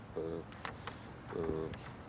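A man's voice making two short, held sounds without clear words, a hesitation between sentences.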